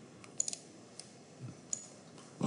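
A few faint computer mouse clicks: a quick pair about half a second in, one at about a second, and another near the end.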